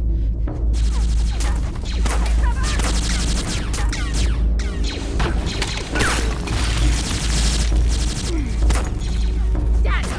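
Film sound-effect blaster fire: a dense barrage of blaster shots with bolts striking and bursting the sand, over a deep booming rumble.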